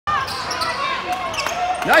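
Basketball play on a hardwood gym court: the ball bouncing, with voices, and a short call of "Nice" near the end.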